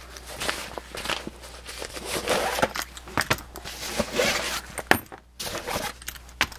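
Nylon zipper pouches being handled and laid down: fabric rustling, with small clicks and clinks of the metal zipper pulls and grommets. A sharper knock comes just before five seconds.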